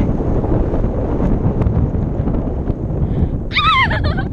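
Wind rushing over the camera microphone during a tandem paraglider flight, steady and loud. Near the end the passenger lets out a short, high, wavering squeal.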